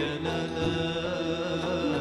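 Male voice singing Gharnati (Andalusian) music, holding long notes that waver and bend in pitch.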